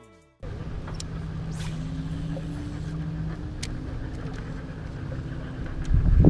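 Boat motor running steadily, starting about half a second in: a continuous hum with low tones that shift slightly in pitch, with a few light clicks over it.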